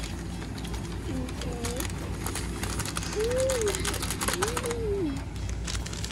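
Fizzing and crackling of many small bubbles popping as baking soda reacts with citric acid in a bowl of purple liquid, densest in the middle. Three soft, drawn-out rising-and-falling "ooh" sounds from a voice come over it.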